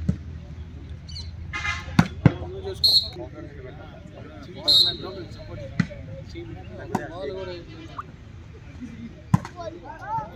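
A volleyball being struck by players' hands and arms during a rally: about five sharp smacks at irregular intervals, with spectators' voices and shouts throughout.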